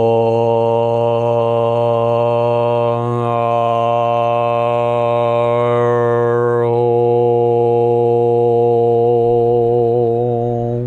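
A man chanting a mantra aloud on one long, held low note, with no break for breath. The tone colour shifts about two-thirds of the way through as the vowel changes.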